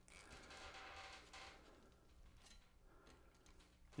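Near silence, with faint small clicks and rustling from lineman's pliers working on wire splices at a metal junction box.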